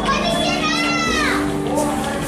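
A child's high-pitched call, about a second long, holding its pitch and then sliding down at the end, over steady background music and crowd noise.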